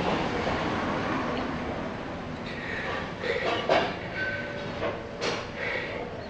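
A man breathing hard and straining with short grunts as he struggles through his last push-up, exhausted after ninety-nine. A long breathy rush fills the first couple of seconds, then several short strained sounds follow.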